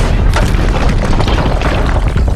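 Action-film sound mix of explosions: repeated booms and crashing impacts in quick succession, with music underneath.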